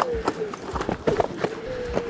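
Onewheel electric boards rolling fast down a dirt trail: irregular knocks and clatter as the tyres hit bumps and stones, with a faint steady whine from the hub motor.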